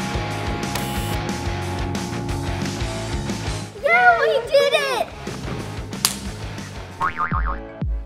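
Background rock music with a steady beat, then two girls shouting and squealing excitedly about four seconds in. Near the end there is a quick run of short rising sweeps.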